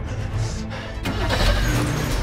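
A van's engine starting up under dramatic background music: a sharp knock about a second in, then a low rumble that swells as the engine catches.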